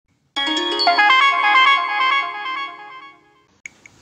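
Short electronic music jingle: a quick run of pitched notes that starts about a third of a second in and fades out by about three seconds.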